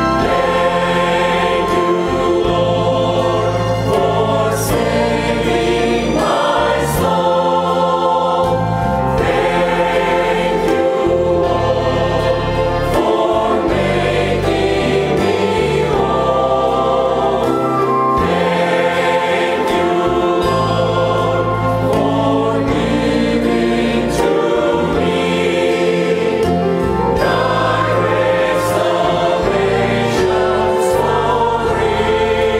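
Mixed choir of women's and men's voices singing a hymn in parts, held chords changing every couple of seconds.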